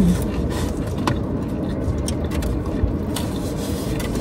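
Steady low rumble of a car idling, heard inside the closed cabin, with chewing and a few soft clicks from handling the sandwiches.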